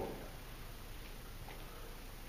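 Quiet room tone in a large room, with a few faint ticks.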